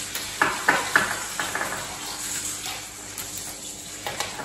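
Plastic markers and pens clicking and rattling together as a hand rummages through a pencil case, with a quick run of clicks in the first second and a half, then softer rustling.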